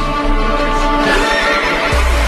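Stage music with a horse whinny sounding over it in the second half.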